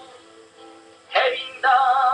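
Voice singing a slow hymn of mercy: a held note fades into a brief lull, and the singing comes back in a little over a second in.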